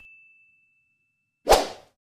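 Animated end-screen sound effects: a bell-like ding rings out and fades away in the first half second, then a single short, loud swoosh comes about a second and a half in.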